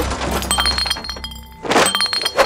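Dramatic sound effect of glass shattering: a sudden crash followed by tinkling, with a second crash near the end, over a low music drone.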